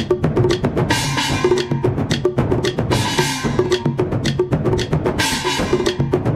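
Festival percussion for a Chinese dragon dance: rapid, steady drumming with sharp wood-block-like clacks and a bright crash about every two seconds.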